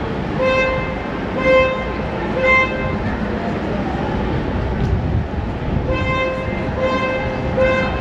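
A horn beeps three short times about a second apart, then three more starting about six seconds in, over steady city street noise.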